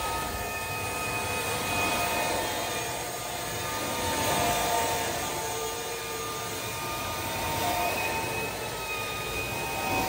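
Steady rushing roar of carpet-extraction vacuum suction drawing air and water up through a VANTOOL Hybrid Glide cleaning wand as it is stroked across carpet. A faint whistle wavers in pitch, and the level swells and eases with the strokes.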